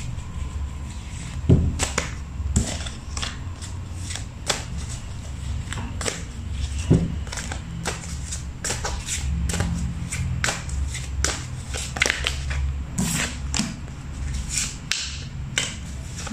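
Small oracle cards being shuffled and handled, with many quick irregular clicks and flicks and cards laid down on the table, over a low steady hum.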